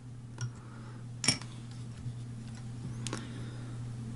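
Quiet room tone with a steady low hum and a few faint, short clicks from hand work at a fly-tying vise as the copper wire is twisted off; the loudest click comes about a second in.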